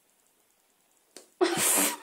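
A domestic cat swatting at a finger: a faint tap, then a sudden loud hiss lasting about half a second near the end.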